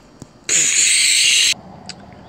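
A loud mouth-made hiss, a 'shhh' about a second long, starting about half a second in and cutting off sharply.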